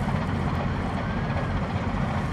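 Low, steady drone of a river ship's diesel engine running.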